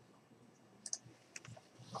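A few faint, irregular clicks from working a computer's keys and mouse while editing text, the first about a second in and the rest closer together near the end.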